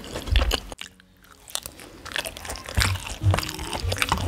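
Close-up chewing and biting of takoyaki: a run of short clicky mouth sounds that drops away briefly about a second in, then resumes.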